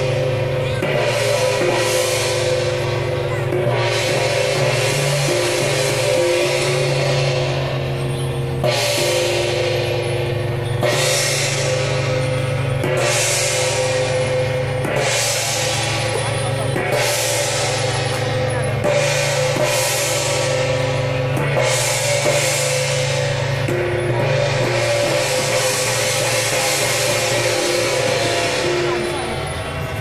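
Loud drum-and-cymbal procession music accompanying the dance, with sustained pitched tones under cymbal crashes that come every second or two.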